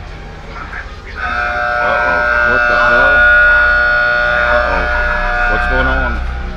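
Electronic sound effect: a steady chord of tones comes in about a second in and holds for about five seconds, with a wavering voice-like sound over it.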